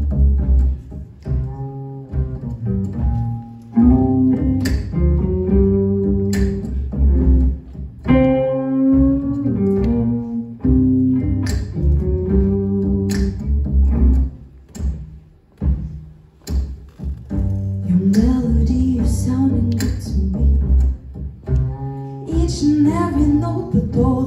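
Live jazz combo playing an instrumental passage, led by a plucked upright bass line under drum and cymbal strikes. Held melody notes sound above them, and a wavering pitched line comes in near the end.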